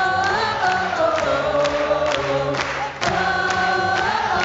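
Male a cappella group singing sustained chords over a steady beat of sharp hits about twice a second, with a brief break just before a new chord about three seconds in.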